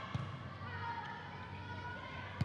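A volleyball struck once: a single sharp smack just after the start, ringing in a gym, with players' voices behind it.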